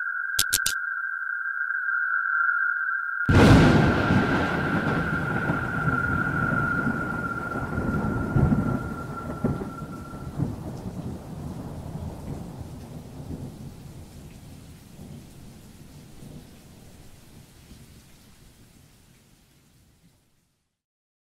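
A steady high-pitched tone with two short clicks, then about three seconds in a sudden thunderclap that rolls on into rumbling thunder and rain, fading slowly away. The high tone dies out about ten seconds in.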